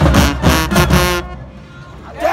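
Marching band brass (sousaphones, trumpets and saxophones) with drums playing a run of short, loud chord hits, then cutting off abruptly about a second in.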